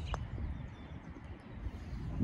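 Low, steady rumble of wind on the microphone outdoors, with a single faint tap just after the start.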